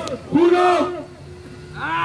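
A man's voice calling out a drawn-out "one" to end a countdown, followed by a brief lull with a faint steady tone; another shout starts near the end.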